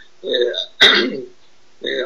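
A man clearing his throat, with a sharp burst a little under a second in.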